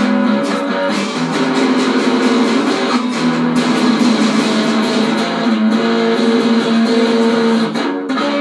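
Electric guitars played through small practice amps: held notes and chords that change every second or so.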